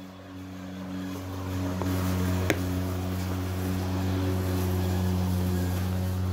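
A steady low motor drone with a few even overtones, swelling over the first two seconds and then running level, with a sharp click about two and a half seconds in.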